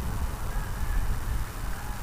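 Steady low rumble of outdoor background noise under a faint even hiss, with no distinct sound standing out.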